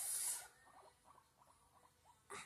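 A brief loud rustle of handling close to the microphone, then a guinea pig making a run of short, faint squeaks.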